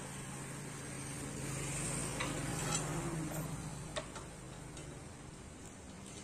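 Workshop sounds while a scooter's rear wheel is being taken off: a steady low hum under light hissing noise, with a few sharp clicks and taps of hand tools, about two, two and a half, and four seconds in.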